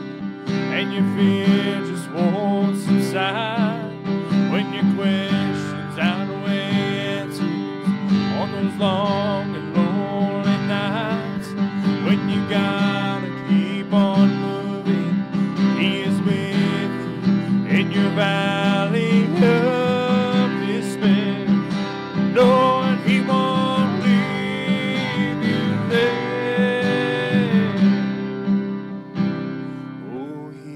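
Acoustic guitar strummed steadily under a man singing a slow worship song, holding notes with a wavering pitch. The music softens near the end.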